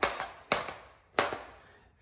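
A knife tip punching through plastic cling film stretched tight over a bowl: three sharp pops about half a second apart, each dying away quickly.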